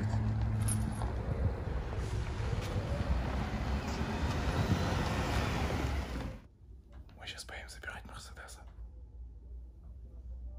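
A Lada Vesta passenger car driving across an asphalt lot: engine and tyre noise over a steady low rumble. About six seconds in the sound cuts off abruptly to a much quieter background with faint voices.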